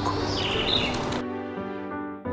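Soft, slow background music with sustained chords. Under it, outdoor background noise that cuts off abruptly a little over a second in, leaving the music alone.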